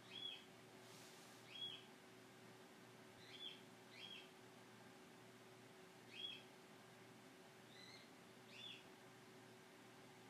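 Faint short chirps of a small bird, about seven at uneven intervals, over a low steady hum.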